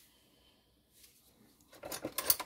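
Mostly faint room tone, then near the end metal teaspoons being handled in a sink, with light scraping and clinking against other spoons.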